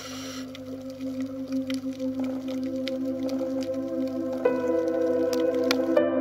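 Ambient relaxation music: sustained, steady drone tones, joined by a new held note about four and a half seconds in, with a few faint clicks scattered through.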